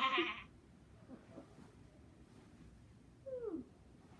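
A child's laugh trailing off in the first half-second, then, about three seconds in, a single short meow-like call that falls in pitch.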